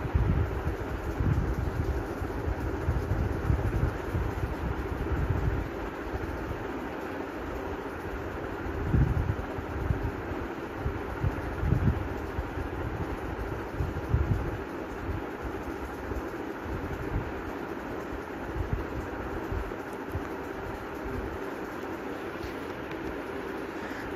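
Steady rushing background noise with a faint steady hum and irregular low rumbles that come and go, with no voice or music.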